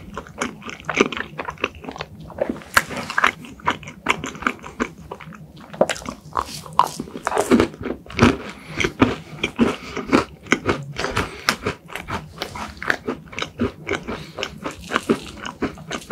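Close-miked chewing of a cream-filled macaron, a dense, irregular run of small mouth clicks and smacks.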